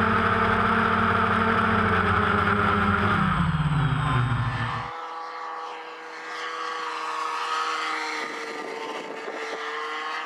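Great Planes Escapade MX radio-control sport plane's engine and propeller, loud and close as heard from a camera on board, running steadily and then dropping in pitch about three to five seconds in. It then changes abruptly to the plane heard from the ground: fainter and thinner, with a steady hum.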